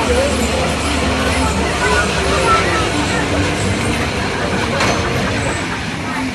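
A dragon-themed kiddie roller coaster train running on its track, a steady low rumble that dies away near the end as the ride comes to a stop.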